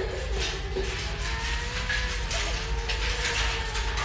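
Film underscore: a sustained, slowly wavering drone with a ticking, rattling percussion pattern over it.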